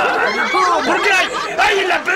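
Speech only: voices talking over each other in a heated exchange.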